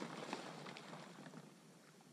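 Faint, soft splashing and scattered small ticks of water as a hunter wades in a shallow marsh and handles decoys, over a light hiss that fades toward the end.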